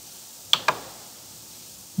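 Two quick clicks of a computer pointer button, a double-click about half a second in, over faint steady hiss.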